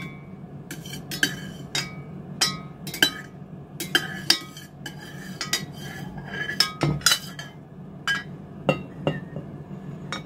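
Irregular sharp clinks and taps of a hard utensil against an enamelled cooking pot, over a dozen in ten seconds, each ringing briefly, as cream is stirred and scraped before it is poured into a glass jar. A steady low hum runs underneath.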